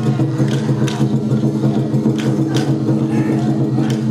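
Sound of a Japanese festival float procession: a steady, unchanging low drone with a few sharp strikes over it, heard as music.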